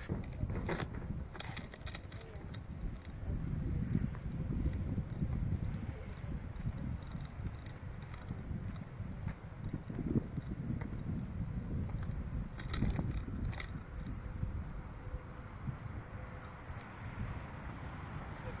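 Uneven low rumble of wind and handling noise on the microphone of a 360 camera being carried, with a few faint sharp clicks about a second in and again about two-thirds of the way through.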